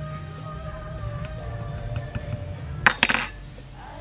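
A metal utensil scraping and clinking inside a plastic tub of powder while fishing for the scoop, with a couple of sharp clinks about three seconds in, over soft background music.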